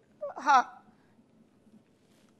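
A woman's voice saying one short "haan" (yes) about half a second in; the rest is near silence.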